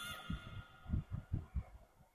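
Background music fading out at the very start, followed by about six soft, irregular low thuds.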